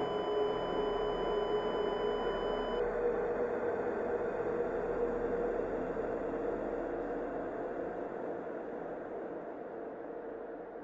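Dark ambient drone with a hissing, noisy texture. A thin steady high electronic tone stops about three seconds in, and the drone then slowly fades.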